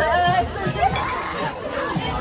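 Several people's voices chattering over one another after a spoken "congratulations", with a crowd murmuring behind.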